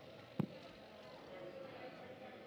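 A single sharp thump about half a second in, over low background conversation in the room.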